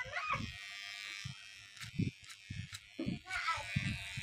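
Electric hair clippers running with a steady buzz for about a second and a half in the first half, trimming the fade at the nape, then a few light clicks.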